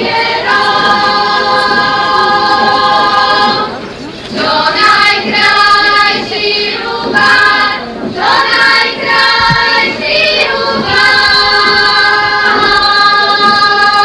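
Folk choir singing a Slovak folk song in long held phrases, with brief pauses between phrases about four, eight and ten and a half seconds in.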